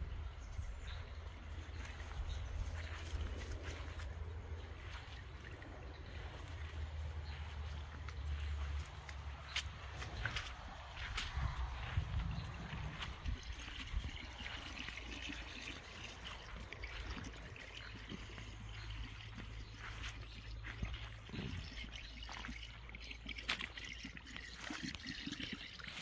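Rainwater trickling and dripping after heavy rain, as a steady even wash of sound, with scattered footsteps on the wet grassy track and a low rumble on the microphone.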